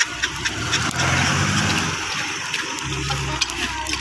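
A motor engine running nearby, a steady low hum that grows stronger twice, over scattered sharp clicks.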